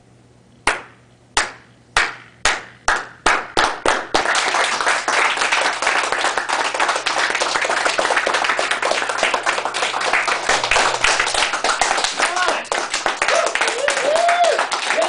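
A slow clap by a small group of people: single hand claps about a second apart that come faster and faster, until from about four seconds in everyone claps together in steady applause. Voices start to cheer near the end.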